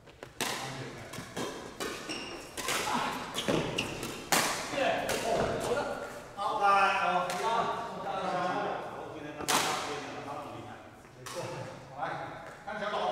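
Badminton rackets striking a shuttlecock during a doubles rally: a string of sharp hits, irregularly spaced, sometimes close together, with voices partway through.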